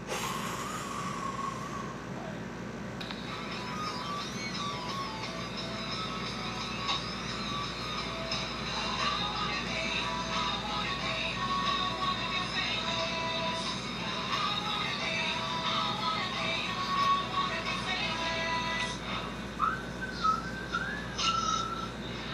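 Music playing, a melody of several held tones, with a hissy noise during the first few seconds before the melody comes in.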